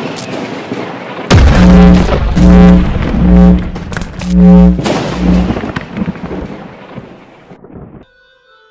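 Cinematic logo-reveal sound design: a rumbling wash of noise, then a heavy booming hit about a second in. Five loud, low, pulsing notes with deep bass follow, and the sound fades away over the last couple of seconds.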